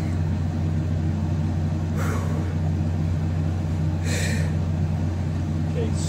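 A steady low mechanical hum runs throughout, with two short breaths about two and four seconds in.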